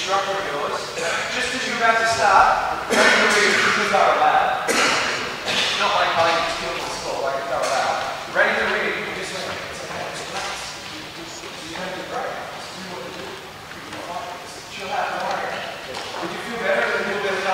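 Speech in a large, echoing hall that the recogniser did not write down, with a couple of sharp knocks about three and five seconds in.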